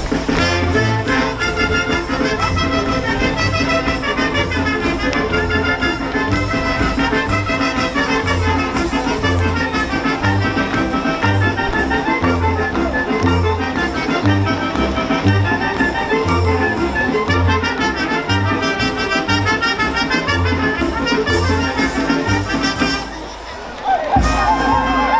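Brass band playing a lively son for folk dancing, trumpets and trombones over a steady bass beat. The music drops away briefly near the end.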